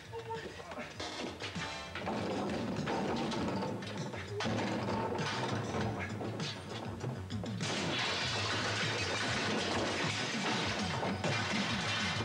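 Background music over repeated clattering and knocking as metal patio furniture is shoved and moved about, getting louder about two seconds in and again in the second half.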